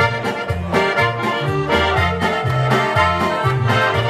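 Live piano accordion music: a lively tune over a steady, alternating bass line.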